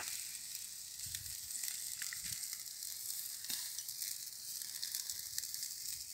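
Pork shashlik on skewers and in wire grill baskets sizzling over glowing charcoal as it browns: a steady sizzle with scattered small crackles.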